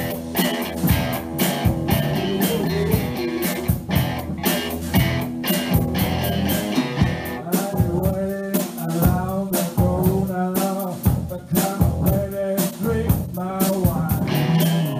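Live rock-and-roll band playing, with electric guitar over a steady drum beat. From about halfway through, a wavering, bending lead line rides over the band.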